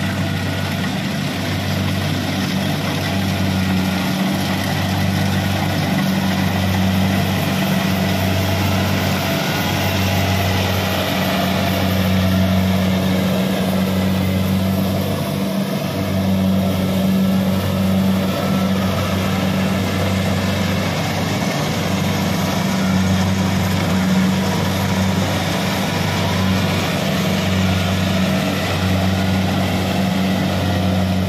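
Kubota DC-70 Pro combine harvester running steadily while it cuts and threshes rice: a loud, constant low diesel drone with mechanical rattle over it.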